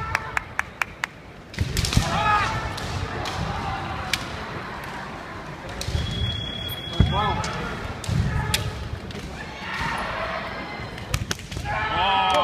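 Kendo kiai shouts, several long drawn-out cries, loudest about two and seven seconds in and building again near the end, with sharp clacks and knocks of bamboo shinai and feet stamping on the wooden floor between them, in the echo of a large sports hall.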